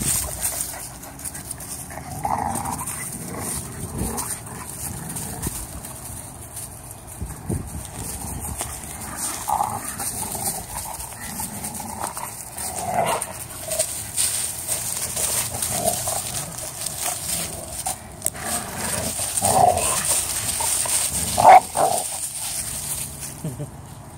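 Two dogs play-fighting, scuffling in dry leaves, with occasional short whines and other brief calls, the loudest a little before the end.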